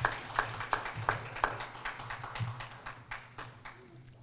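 A few people clapping, with scattered, uneven claps that thin out and fade toward the end.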